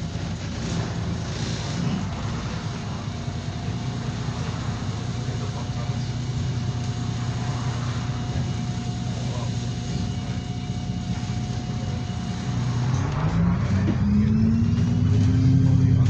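Diesel bus engine and drivetrain heard from inside the moving bus: a steady engine note with a faint whine. In the last few seconds the engine revs up and grows louder, its pitch rising as the bus accelerates.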